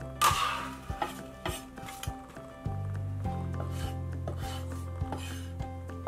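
Chef's knife slicing red chili peppers on a wooden cutting board: a brief scrape near the start, then knife knocks on the board about twice a second, over background music with sustained low notes.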